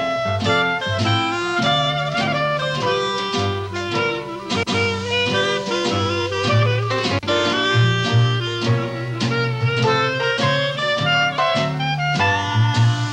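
Small traditional jazz band playing a swing tune: two clarinets carry the melody with vibrato over guitar, drums and a string bass walking a steady beat.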